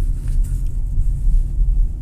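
Steady low rumble of a Hyundai car rolling in neutral, heard from inside the cabin: tyre and road noise as it coasts.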